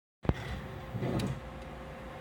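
A single sharp knock as the recording phone is handled just after recording starts, followed by quiet room tone with a faint steady hum and some soft movement about a second in.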